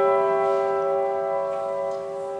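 Grand piano: one loud chord, struck just before and held, its many notes ringing on and slowly fading away.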